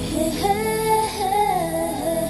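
A song with a high female singing voice over instrumental backing, the dance music for a Bhutanese dance; the sung phrase starts about half a second in.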